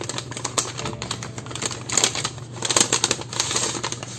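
Paper crinkling and rustling as a stack of die-cut paper pieces is slid out of a translucent paper sleeve: a dense run of small crisp crackles and clicks, loudest about halfway through and again in the last second.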